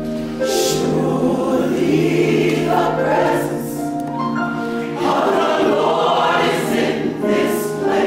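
A gospel church choir of mixed men's and women's voices singing together, with sustained held chords.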